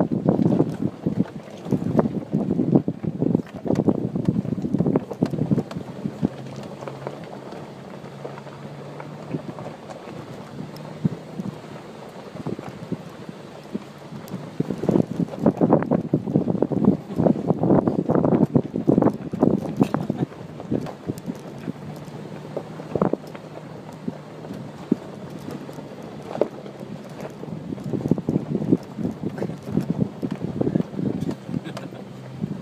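Nissan Xterra SUV crawling over a rough, rocky dirt road, heard from inside the cabin: a low steady engine hum under bouts of knocking and rattling as the tyres and suspension jolt over rocks. The bumping is heaviest in the first few seconds, again from about halfway through, and near the end.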